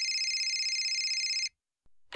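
Telephone ringing: one fast-trilling ring that stops about one and a half seconds in, as the call is answered.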